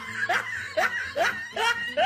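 A person laughing in short, repeated snickers, each rising in pitch, about two a second.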